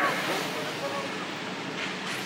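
Street noise cutting in abruptly: a steady traffic hum from vehicles and motorcycles, with faint voices of people nearby.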